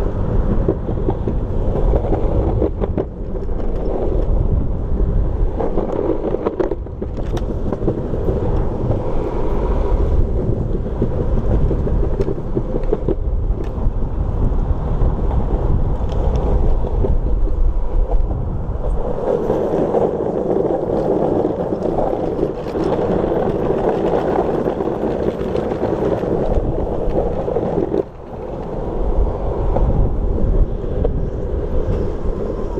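Wind buffeting a shoulder-mounted camera's microphone, with continuous road noise from riding over pavement; the sound dips briefly about two seconds before the end.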